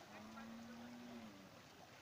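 A cow's faint low moo: one held, steady note of about a second near the start.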